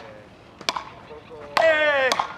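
Sharp crack of a wooden frescobol paddle striking the rubber ball, once right at the start and again about a third of the way in, then a player's long shout falling in pitch near the end.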